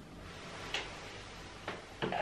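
Quiet room with two faint short clicks about a second apart.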